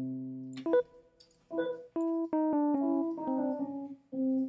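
Software electric piano in Logic Pro X: a held chord fades out, then a quick run of short notes sounds as selected notes are dragged in the piano roll, each move auditioning them at the new pitch, stepping mostly downward.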